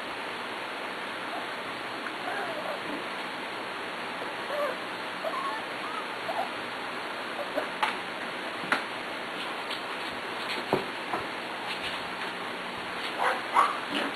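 Six-week-old Pembroke Welsh Corgi puppies whimpering and squeaking faintly now and then over a steady hiss, with a few sharp clicks. A louder yelp comes near the end.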